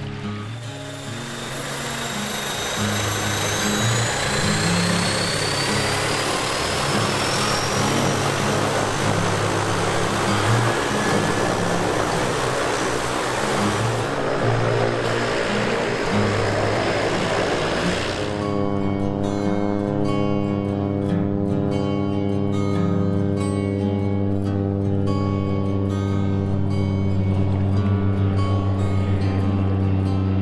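Floatplane engine and propeller running up for takeoff, a broad rushing noise with a rising whine, under background music. About two-thirds of the way through, the aircraft noise cuts off suddenly and only the music, with long held notes, remains.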